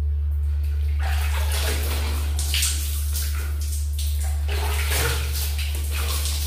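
Water splashing and running over skin as a person washes her face and body by hand, in irregular splashes starting about a second in, echoing slightly in a small tiled bathroom.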